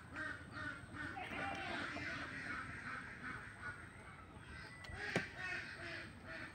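Birds calling nearby in a steady run of short repeated calls, several a second, with one sharp knock about five seconds in.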